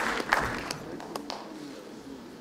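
Applause dying away, ending in a few scattered single claps.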